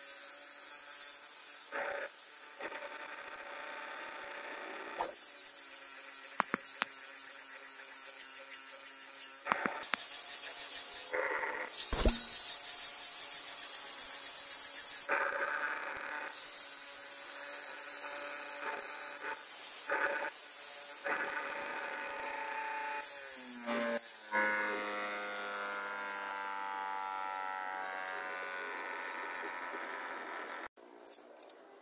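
Bench grinder wheel grinding the edge of an iron shovel blade: a hissing rasp each time the steel is pressed to the wheel, in repeated passes a few seconds long, over the steady hum of the grinder motor. Near the end the motor's hum slowly falls in pitch as the wheel spins down.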